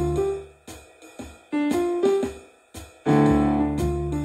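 Digital stage piano playing a modal blues. Full chords give way about half a second in to a sparse, quieter run of single notes with short gaps, and full chords come back loudly about three seconds in.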